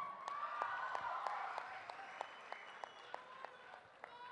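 Audience applause: scattered handclaps that thin out and die away toward the end.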